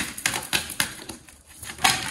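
An oracle card deck being shuffled by hand: a run of light, irregular card snaps and flicks, quieter about a second in, then a louder snap near the end as two cards jump out of the deck.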